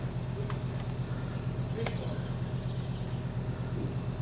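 Small metallic clicks of steel engine parts being handled as a pin is fitted through a sleeve operating lever, the sharpest just under two seconds in, over a steady low hum.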